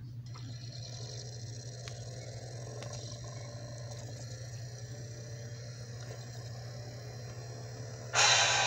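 COOAU DVD player loading a disc: a faint steady whir and whine from the drive, with a couple of light ticks, over a low steady hum.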